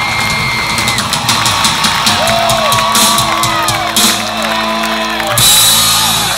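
Live rock band playing through a PA, drums and cymbals driving under held instrument notes, while the crowd whoops and cheers over it. A loud burst of cymbals or crowd noise comes near the end.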